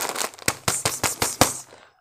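Plastic snack packet crackling as it is handled and torn open: a quick string of sharp, loud crackles.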